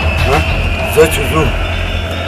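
Short spoken phrases from a man's voice over a steady low background rumble.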